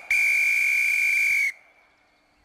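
A whistle blown in one long steady blast of about a second and a half, then cut off.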